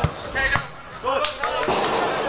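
A football kicked with a sharp thud near the start, a fainter knock about a second later, and players shouting on the pitch.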